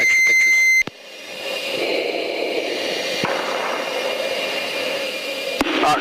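A steady high-pitched beep tone cuts off under a second in. It is followed by the steady rush of jet fighter cockpit noise, engine and airflow, which builds over the next second or two and then holds.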